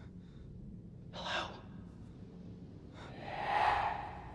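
A person's breathy gasps: a short sharp intake about a second in, then a longer, louder one near the end, over a low steady hum.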